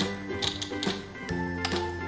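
Plastic alphabet letters clicking against a hard tabletop as they are picked up and set down, several sharp clicks over background music with steady sustained notes.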